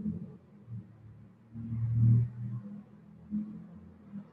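A low rumble that swells and fades unevenly, loudest about two seconds in.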